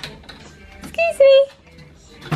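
A woman's voice saying "beep, beep" in a high sing-song, two notes about a second in, the second lower and held a little longer.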